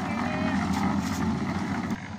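Small engine-driven drum concrete mixer running steadily with its drum turning, with a faint scrape and rattle as shovelfuls of sand and aggregate are thrown into it.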